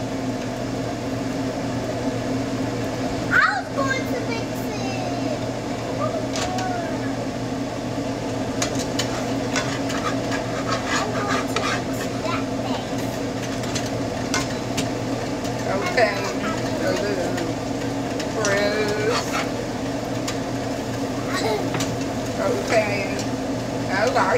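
A wire whisk clicking and scraping against a bowl now and then, over a steady low hum, with a few brief stretches of voices.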